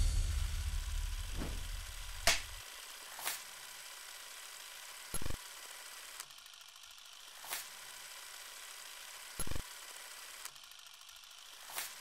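Sound-design effects: a deep hit dies away over the first two seconds, then scattered mechanical clicks and clunks come every second or two over a faint steady hiss.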